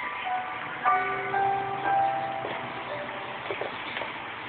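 Electronic melody from a baby activity jumper's sound unit, a simple tune of held notes played one at a time, with a few light clicks of the toys partway through.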